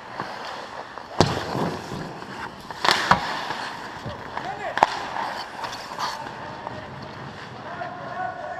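Ice hockey play close to the goal: skates scraping the ice and sharp cracks of sticks and puck, the loudest about a second in, around three seconds in and near five seconds, as the goalie drops to make a save.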